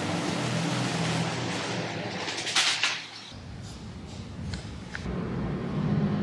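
Steady outdoor background noise with a low hum, typical of distant city traffic, and a brief high hiss about two and a half seconds in; the sound drops and changes about three seconds in.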